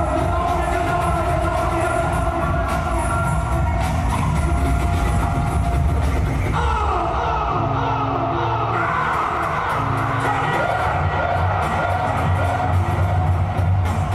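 Live hip-hop concert music over an arena PA: sustained pitched tones over a steady bass line, shifting to a new, higher chord about six and a half seconds in.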